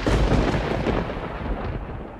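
Thunder rumbling through heavy rain, slowly dying away.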